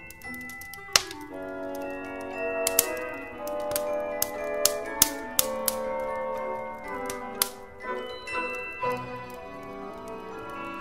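Instrumental Christmas music with a wood fire crackling over it: a series of sharp pops and snaps, the loudest about a second in and around the five-second mark.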